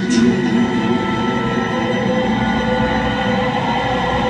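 Live space-rock drone from the band and orchestra: many held synthesizer and string tones sounding together, with a wavering lower tone in the first second or so, recorded from the audience.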